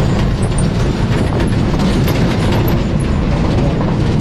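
Interior of a rural bus on the move: a steady, loud engine and road rumble, with the body and fittings rattling throughout.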